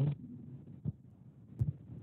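Faint steady hum from an open video-call microphone, with two short soft thumps, one about a second in and a deeper one just after one and a half seconds.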